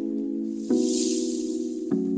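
Outro background music: sustained instrumental chords that change with a new struck attack about two-thirds of a second in and again near the end. A soft high hissing swoosh swells and fades in the middle.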